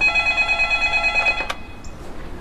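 Telephone ringing: an electronic ring of several steady tones that stops abruptly with a click about one and a half seconds in, as the call is answered.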